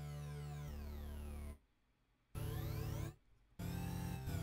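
Synthesizer notes played through Bitwig Studio's Phaser effect, with its notches sweeping slowly up and down through the tone. A held note stops about a second and a half in. After a short silence the notes come back twice with a brief gap between.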